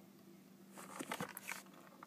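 Faint handling noise from a sneaker being held and turned: light rustles and a few small clicks, mostly in the middle of the stretch.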